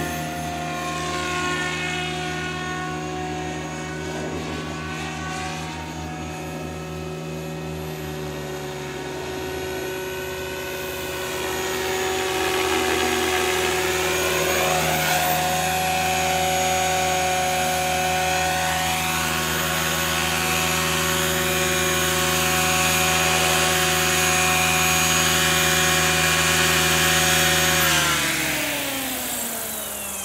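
Electric SAB Goblin 500 RC helicopter in flight: a steady whine of main rotor, tail rotor and motor, louder from about twelve seconds in. Near the end the whole whine drops in pitch as the rotor spools down after landing.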